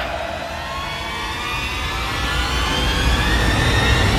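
Intro sound effect for a logo animation: a rising riser tone that climbs slowly and steadily over a noisy wash with a deep low rumble.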